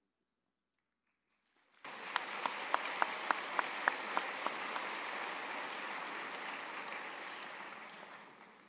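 Audience applause breaking out about two seconds in and continuing, easing off near the end. For the first couple of seconds a few sharp, close claps stand out at about three a second.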